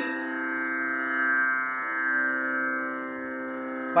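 A tanpura drone sounding steadily on its own, holding the tonic pitch that the singer tunes his voice to.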